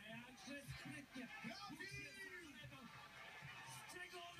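Faint voices from a television sports broadcast, heard through the TV's speaker, with music under them.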